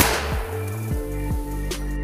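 A single gunshot from a long gun right at the start, its echo trailing off over about half a second, over background music.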